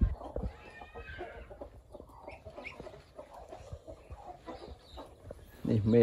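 Poultry in a pen calling softly with scattered short clucks and peeps.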